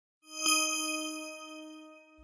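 A single bell-like chime struck once about a quarter second in, ringing out and fading slowly: a transition sting between the sponsor read and the next segment.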